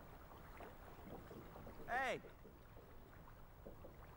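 Quiet ambience of a small boat on calm water, with faint ticks and water sounds. About halfway through, a voice calls out once: a single drawn-out word that rises and falls in pitch.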